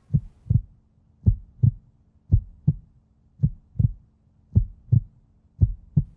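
Heartbeat sound effect used as a suspense cue: paired low thumps, lub-dub, repeating about once a second over a faint steady low hum.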